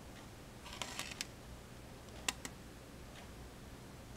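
Faint clicks over quiet room tone: a short rustling cluster of clicks about a second in, then two sharp ticks a little past two seconds.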